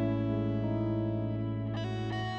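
Background music: a guitar played through effects, holding sustained notes, with a new chord struck near the end.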